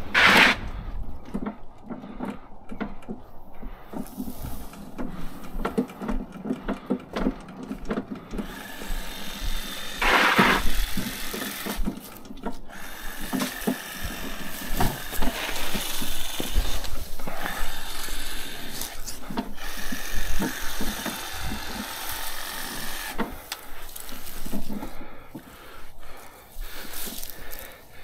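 Billy Goat KV601SP walk-behind leaf vacuum being pushed with its engine off, its wheels and frame rattling and knocking irregularly as it rolls down a metal mesh trailer ramp and over concrete and grass. A louder clatter comes right at the start and again about ten seconds in.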